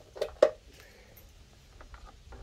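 Two short, sharp knocks about a quarter second apart, the second much louder, from a mains plug and cord being handled as a corded sander is unplugged. A few faint clicks follow near the end.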